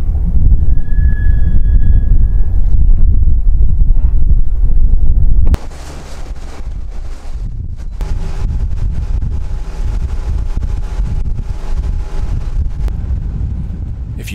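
Heavy wind rumble on the microphone from a motorboat running at speed across a lake. About halfway through it cuts to a quieter steady rush of wind and water with a faint steady hum of a 115 hp outboard motor, heard from aboard the moving boat.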